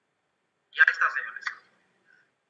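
A brief snatch of a person's voice, thin and lacking any low end, starting just under a second in after silence and lasting about a second.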